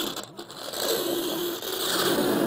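Fingernails scraping down a chalkboard: a long grating screech, broken briefly about half a second in.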